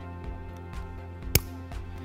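Background music with a steady beat. About halfway through, a single sharp metal click as the cable's snap hook clips onto the ankle strap's D-ring.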